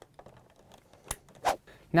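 A couple of short plastic clicks about half a second apart, over faint handling noise, as an Ethernet cable's RJ45 plug is pushed into a router port.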